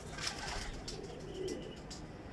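Tippler pigeons cooing in a loft, with a low coo about one and a half seconds in and a short rustle near the start.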